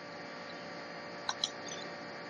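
Two quick computer mouse clicks, close together, about a second and a quarter in, over a steady faint hiss and hum from the recording.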